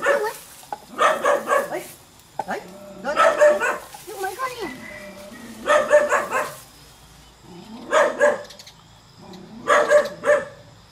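A dog barking in repeated bouts, about one every two seconds.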